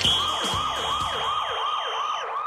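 A referee's whistle blown in one long, steady, shrill blast of about two seconds that ends the timed game at the close of the countdown. Under it, a siren-like tone wails up and down about twice a second.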